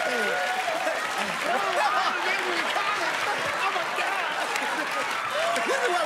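Studio audience laughing and applauding, with many voices laughing over one another.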